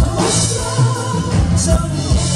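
A live pop band playing: men singing into microphones over a drum kit, electric bass and keyboard, with regular drum beats.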